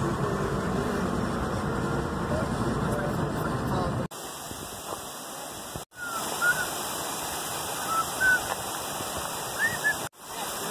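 Road noise inside a moving car's cabin for about four seconds. After a cut comes steady rushing water from a gorge stream, with a few short, high, rising chirps over it.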